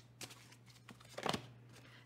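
Faint handling of a tarot card as it is drawn from the deck and laid on the table: two soft clicks or rustles about a second apart, over a low steady hum.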